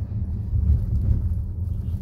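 Steady low rumble of a Volkswagen Teramont SUV driving, heard inside its cabin: road and engine noise from the moving car.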